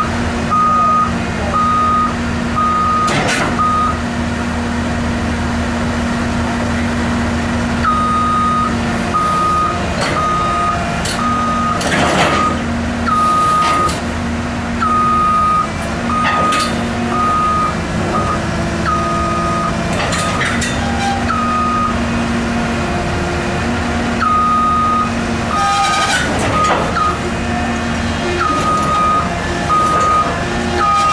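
Caterpillar 319D LN excavator's warning alarm beeping in spells, about one beep every 0.7 s with pauses of a few seconds between spells, over the steady run of its diesel engine. A few sharp knocks stand out, the loudest about 12 s in and again near 26 s.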